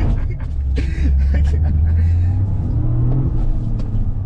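Car engine droning low inside the cabin while driving, its pitch rising a little near the end.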